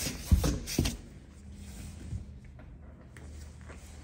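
Metal rigging hardware (shackles and carabiners) being handled and clinked together as a D-ring is set up in a break-test rig: a few short knocks in the first second, then only a low steady hum.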